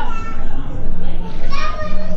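Children's voices, children at play, with short high-pitched calls.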